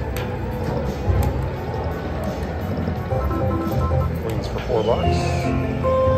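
Aristocrat Goblin's Gold video slot machine playing its reel-spin music and chimes through two spins: short melodic notes stepping in pitch, with a few quick sweeps and a falling tone near the end. Underneath runs casino floor noise with background voices.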